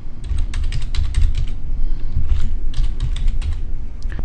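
Typing on a computer keyboard: two quick runs of keystrokes with a short pause between them, as a short word is typed in.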